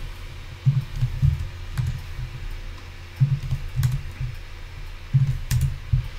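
Computer keyboard being typed on in short, irregular strokes as code is edited, with a few sharper key clicks among duller thuds, over a steady low hum.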